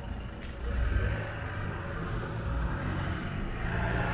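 Street traffic: cars and vans moving slowly through a mini roundabout, a low engine and tyre rumble that swells about a second in.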